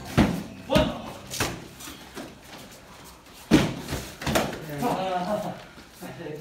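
Practice weapons striking against a shield during sparring: several sharp knocks, two bunched close together near the start and a loud one in the middle, with a shout of "One!" counting a hit.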